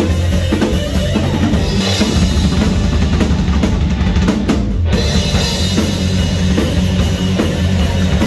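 Live rock band playing loud: drum kit with heavy bass drum and distorted electric guitars. About halfway through, the higher parts drop out for a moment while the low drums and bass keep going.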